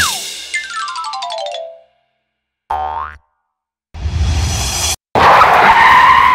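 Cartoon sound effects: a falling glide into a quick descending run of tones, a short boing about three seconds in, then a loud rush of noise with a rising whine as a cartoon car drives in.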